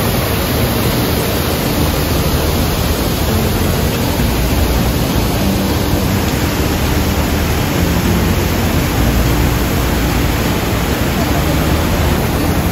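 The Rhine Falls, a large river waterfall, with its water rushing and crashing over rocks in a loud, steady, unbroken noise.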